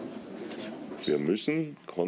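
Low murmur of people talking in a room, then about a second in a man's voice starts speaking in short bursts.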